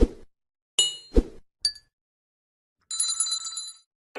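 Sound effects of an animated 'like the video' button graphic: a thump, two sharp clicks with a bright ring and a short high ping within the first two seconds, then a shimmering chime about three seconds in.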